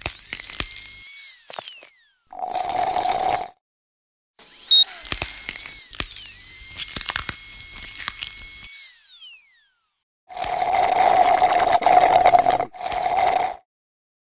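Dental high-speed drill whining: it spins up to a high pitch, holds and winds down, near the start and again in the middle, with a second spin-up overlapping the first. Between the drill runs and near the end come three short rushing, hissing bursts, the longest just before the end.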